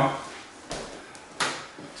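Total Gym exercise bench knocking and rubbing as a person scoots down its glideboard: faint shuffling with a sharp knock about two-thirds of a second in and a louder one about a second and a half in.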